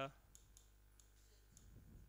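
Near silence with a few faint, scattered clicks of a pen tapping on an interactive touchscreen board as words are written.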